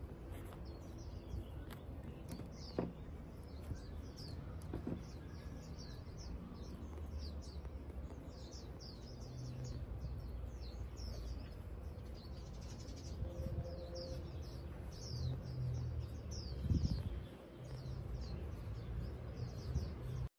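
Small birds chirping busily and continuously in many short, quick, falling chirps, over a low rumble.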